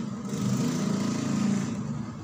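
Arcade game machine noise: a steady engine-like drone with a hiss, swelling and then fading near the end.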